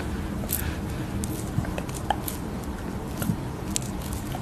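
Flat applicator brush spreading a thick green face mask across the cheek: scattered small clicks over a steady low background noise.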